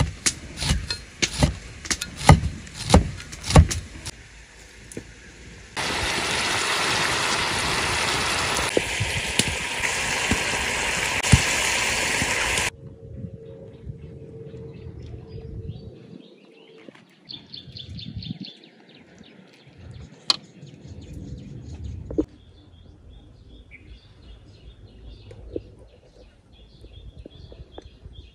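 A cleaver chopping chilies on a wooden cutting board, a quick run of sharp knocks at about two to three a second for the first five seconds. Then a loud steady hiss for about seven seconds that cuts off suddenly, followed by quieter outdoor background with a few bird chirps.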